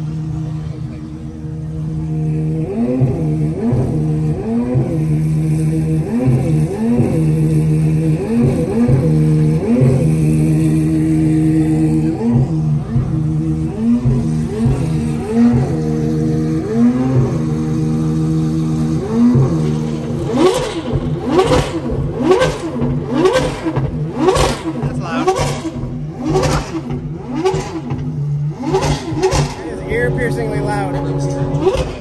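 A high-performance car engine runs at a steady fast idle and is revved in repeated short blips, each one rising and falling in pitch. From about two-thirds of the way in, a run of sharp irregular cracks joins the revving.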